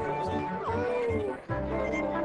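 Live indie pop band with strings playing an instrumental passage: a held chord with a sliding glide in pitch about half a second in, a brief dip near the middle, then a new chord with a deep bass line entering.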